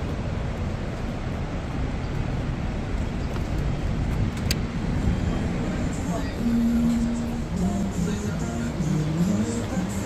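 Low, steady city street traffic noise. About six seconds in it gives way to restaurant background sound, with pitched voices or music over it.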